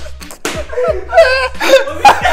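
A single sharp slap about half a second in, followed by laughter, over faint background music.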